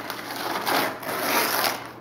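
Gift wrapping paper being ripped and crinkled as a present is torn open, a continuous rough tearing rustle.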